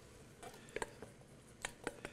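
Four faint, light clicks, in two pairs, of a wooden spoon knocking against a stainless steel bowl as tomato is scraped out of it into a saucepan.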